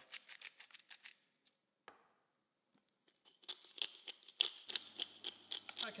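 Hand-twisted salt and pepper grinder grinding: a fast run of fine ratchet clicks, stopping about a second in and starting again after a pause of about two seconds.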